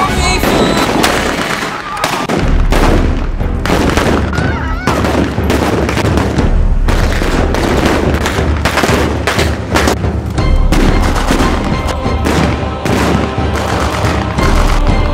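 Battle-reenactment gunfire: rifles firing blanks in a rapid, irregular volley of shots that runs on through the scene, with background music underneath.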